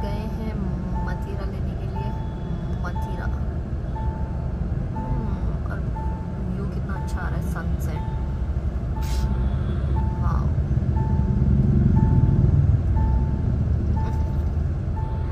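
A steady electronic beep repeating about once a second over the rumble of busy street traffic of motorbikes and cars. The traffic rumble swells louder about ten seconds in.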